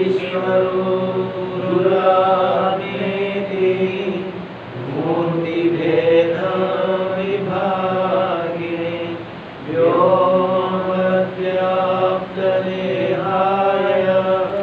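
A man's voice chanting in long held notes, phrase after phrase, dropping off briefly twice to take a breath, over a steady low hum.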